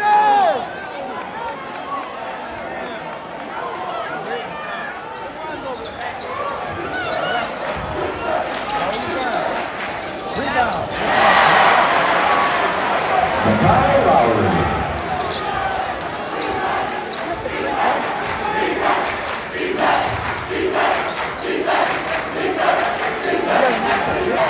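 Crowd noise in a high school gym during a basketball game: many spectators talking and calling out, with a basketball being dribbled on the court. The crowd swells louder about eleven seconds in for a few seconds, and quick knocks of the dribbling stand out near the end.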